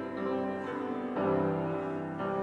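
Grand piano playing slow, held chords, with a new chord struck just after the start and another about a second in.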